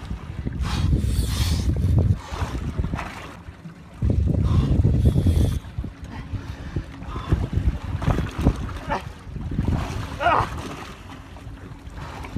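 Wind buffeting the microphone on an open boat at sea, with water lapping at the hull. It comes in two strong gusts of rumble: one at the start and another about four seconds in, with quieter stretches between.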